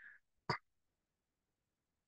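A faint breath ending just after the start, then a single sharp keyboard click about half a second in, as a command is entered at the console; otherwise quiet.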